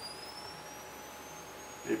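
Nikon SB-800 speedlight recharging after a full-power flash: a thin, high whine that climbs slowly and steadily in pitch as its capacitor charges.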